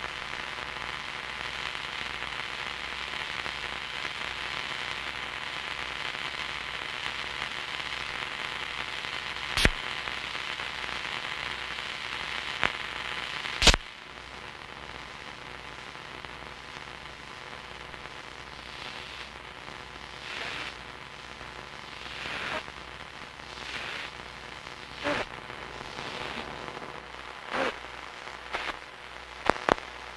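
Experimental noise music: a steady static hiss over a faint hum, broken by two sharp clicks, the second the loudest. About halfway through the hiss drops away and gives way to scattered crackles and short bursts of noise.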